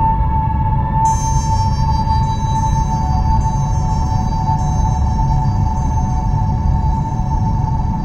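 Ambient instrumental music: long held tones over a low, noisy bed, with a cluster of high held tones coming in about a second in.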